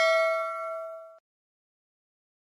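Ding of a notification-bell sound effect in a subscribe-button animation, ringing out with several clear tones and fading away a little over a second in.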